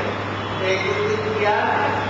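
A voice speaking over a steady low electrical hum and a noisy background.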